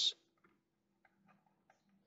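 A few faint ticks at uneven spacing from a pen handled against paper, over a faint low steady hum.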